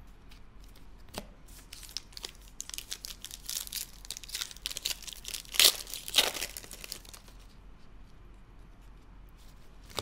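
Foil trading-card pack wrapper being torn open and crinkled by hand, a run of sharp crackles with two loudest rips about halfway through, then quieter handling of the cards.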